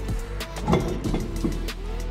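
Background music over the car's air suspension lowering the body down onto the new wheels and tyres, with a few light clicks.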